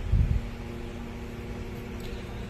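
A brief low thud just after the start, then a steady background hum with a low droning tone over a faint hiss.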